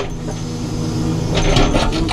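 Caterpillar 432F2 backhoe loader's diesel engine running steadily under hydraulic work, heard from inside the cab, with a rise of rougher, harsher noise about one and a half seconds in.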